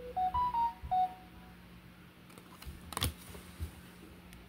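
A short electronic jingle of about five beeping notes, stepping up in pitch and then back down, in the first second and a half. A brief clatter follows about three seconds in.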